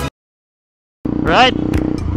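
Music stops abruptly and about a second of dead silence follows. Then a KTM Duke 200's single-cylinder engine runs steadily under a ride, with a brief voice sound over it.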